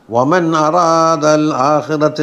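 A man's voice reciting in a chanted intonation, held on a level pitch with few breaks, starting right after a short pause.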